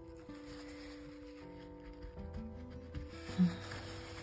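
Soft background music of held, slowly changing notes, with a short low sound about three and a half seconds in.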